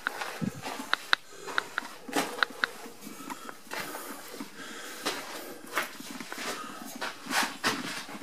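Footsteps and small clicks and rustles of someone walking along a ship's deck, with several sharp ticks in the first few seconds and a few soft rushes of noise later on.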